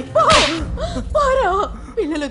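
A short, sharp swish sound effect about a quarter second in, laid over a fast whip-pan, with a voice rising and falling around it.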